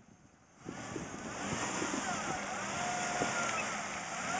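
First-generation Ford Explorer's V6 engine running under throttle as the SUV drives through a muddy puddle, with a wash of splashing water. The sound comes in about half a second in and holds steady.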